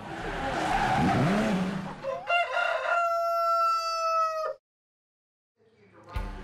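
An intro sound effect: a whoosh for about two seconds, then an animal call, a few short notes followed by one long held note that drops in pitch and cuts off, then silence.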